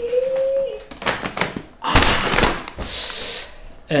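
Large paper shopping bag rustling as it is handled, then set down on a table with a loud thump about two seconds in, followed by a short crinkle of paper.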